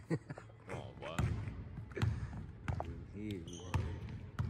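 Basketball bouncing on a hardwood gym floor, a handful of separate bounces about a second apart, with short bits of voice between them.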